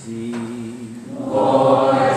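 Church choir singing a slow sacred piece during Mass. The sound grows fuller and louder about halfway through.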